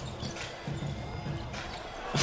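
Basketball game in an arena: background music and crowd noise under the play on court.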